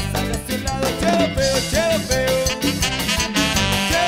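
Instrumental break of a norteño cumbia: an accordion plays short up-and-down melodic figures over a steady bass line and an even cumbia percussion beat, with no singing.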